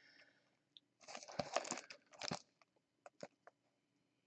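Faint crinkling of the plastic shrink wrap on a cardboard trading-card hobby box as it is handled and turned over in the hands: one crackly spell about a second in, a shorter one just after, then a few light ticks.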